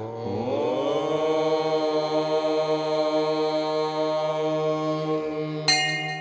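Devotional chant music: a long chanted tone slides up into its pitch and is held for about five seconds over a steady low drone. A bright ringing strike comes near the end.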